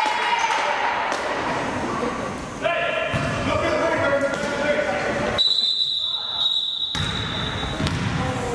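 Basketball game in an echoing gym: players' and spectators' voices calling out over a basketball bouncing on the hardwood floor. A little past the middle, a steady high whistle blast lasts about a second and a half.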